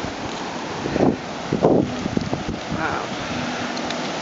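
Wind buffeting the microphone in gusts, about a second in and again shortly after, over a steady rush of floodwater pouring across a paved road.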